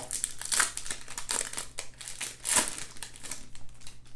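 Trading card pack wrapper being torn open and crinkled by hand, in irregular crackles with the loudest crinkle about two and a half seconds in.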